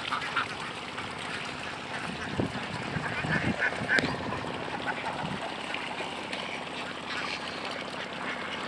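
A flock of Khaki Campbell ducks quacking, with the loudest cluster of calls about three to four seconds in.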